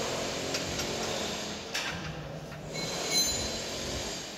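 Spinning-mill machinery running with a steady mechanical noise. There are a few sharp metallic clicks, and a brief high-pitched metal squeal about three seconds in.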